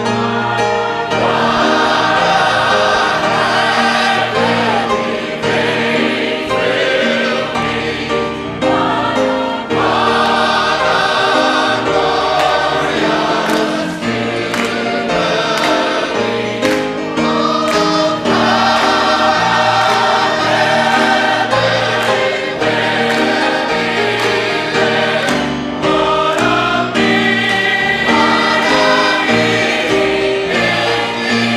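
A large choir and congregation singing a southern gospel song together in harmony, with piano accompaniment.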